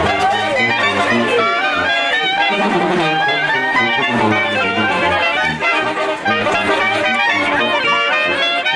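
A brass band of clarinets, trumpets, trombone and sousaphone playing a dance tune, with melody lines over a pulsing bass.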